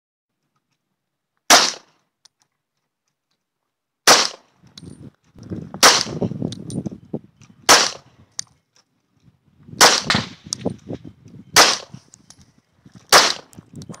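Seven handgun shots fired one at a time, about two seconds apart, on an outdoor shooting range, with a low rumble between some of the shots.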